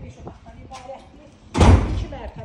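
A sudden loud bang about one and a half seconds in, heavy in the low end, dying away within about half a second.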